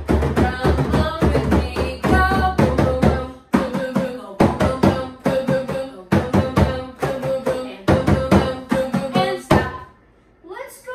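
Two hand drums, a large frame drum and a smaller rimmed drum, struck with open palms in a quick steady beat, with a sung melody over the drumming. The playing stops just before the end.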